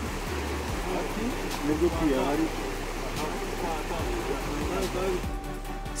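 Men's voices calling and talking as they work, with a shallow stream running steadily underneath.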